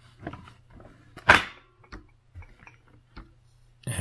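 Plastic water-tank and mop module being slid and clicked into the back of a DEENKEE D30 robot vacuum. One louder clack about a second in, with a few lighter plastic knocks around it.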